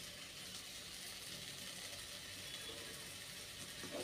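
Onion-tomato masala frying quietly in a kadai, a faint steady sizzle, with a soft brief sound near the end as grated coconut is tipped in.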